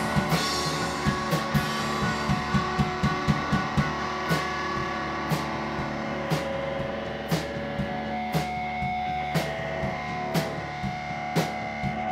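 A rock band playing live on electric guitars and drum kit, without singing. The drums beat fast at first, then settle to a heavy hit about once a second from about four seconds in, under held guitar notes.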